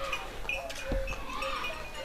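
A dull thump, then a short call from a farm animal that rises and falls in pitch about a second in.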